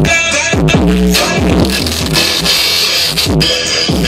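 A drum beat played from vinyl on a pair of turntables, cut with hand scratches that sweep up and down in pitch several times.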